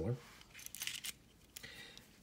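A few faint, sharp metal clicks and light rattles from a MAX HD-10FL mini stapler being loaded: a strip of staples set into its open magazine and the top handled back into place.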